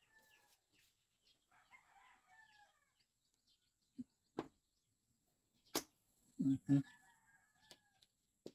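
Faint chirping bird calls in the background, broken by a few sharp clicks about four and six seconds in, and two short, louder low-pitched calls a little later.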